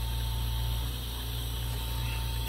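Lampworking torch burning steadily: an even hiss of flame with a low hum beneath, while a glass rod is melted onto a bead in the flame.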